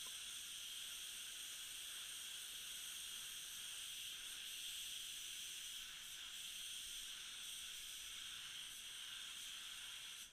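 SATAjet RP paint spray gun, air set at 30 PSI, spraying red base coat as a faint, steady hiss of air and atomised paint.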